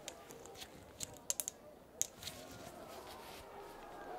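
Glass dropper and amber dropper bottle handled in gloved hands: a string of small, sharp glass clicks and taps through the first two seconds or so, then softer handling sounds.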